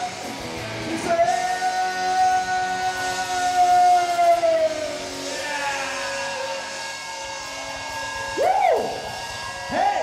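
Live rock band playing in a hall: a long held note runs from about a second in to about the halfway point, and a singer's short rising-and-falling yells come near the end.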